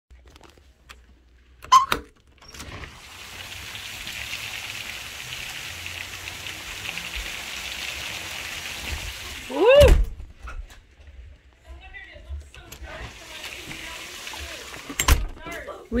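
A door latch clicks, then ice pellets make a steady hiss of fine ticks as they land on a concrete patio and yard. A short voiced sound is heard just before the middle, and there is another click near the end.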